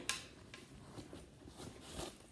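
Faint rustling and small clicks of hands rummaging inside a zipped crossbody handbag, with one sharper tick just after the start.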